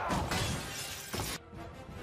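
Film soundtrack: a loud shattering crash over the musical score, cutting off about one and a half seconds in.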